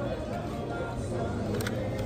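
Faint background music over low, steady restaurant dining-room noise.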